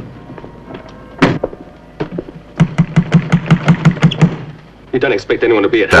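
A car door shuts with a single thunk about a second in, followed a little later by a quick, evenly spaced run of sharp taps.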